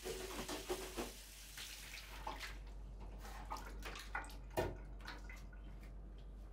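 Water splashing at a bathroom sink as a face is washed, for about the first two and a half seconds. Then a few scattered clicks and knocks, the loudest about four and a half seconds in.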